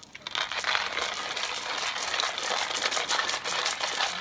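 Hario Mini Mill Slim hand coffee grinder being cranked, its ceramic burrs crushing coffee beans: a steady, rapid crackling crunch of many small clicks.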